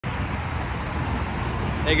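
Steady hum of road traffic, an even hiss with a low rumble underneath.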